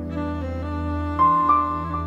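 Slow, sad violin melody over a sustained backing arrangement. New melody notes enter about a second in and again shortly after.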